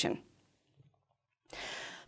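A woman's speech trails off, then a gap of near silence, then about one and a half seconds in a quick intake of breath before she speaks again.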